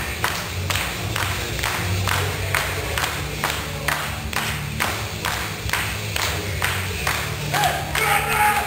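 Crowd clapping in unison at a steady beat, about two claps a second, over a low steady hum.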